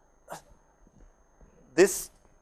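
A pause in a man's lecture speech: one short, sharp sound about a third of a second in and a few faint ticks over a faint steady high whine, then he speaks a word near the end.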